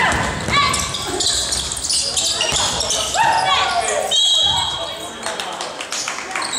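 Basketball game in a large gym: sneakers squeaking in short chirps on the wooden court, the ball bouncing, and players' voices, all echoing in the hall.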